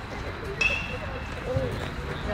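Chatter of voices around a baseball field. About half a second in, one brief, high, held call rises above it.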